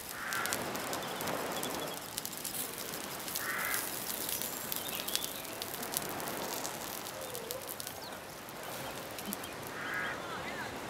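Wood fire crackling under fish frying in coconut oil in a clay pan, a steady hiss dotted with small pops. A bird gives two short harsh calls, about half a second in and again about three and a half seconds in.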